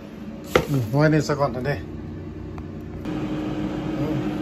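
A sharp knock, then a brief vocal sound, then a steady electric hum from a countertop air fryer that starts suddenly about three seconds in.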